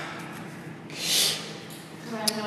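A single breathy puff of air, a sharp exhale or snort from a person, about a second in, lasting about half a second.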